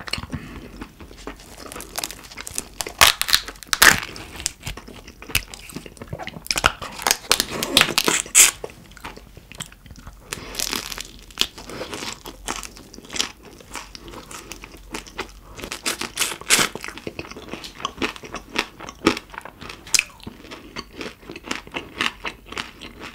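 Close-miked eating of raw carabinero shrimp: wet chewing and biting with many sharp crackles, coming in clusters every few seconds.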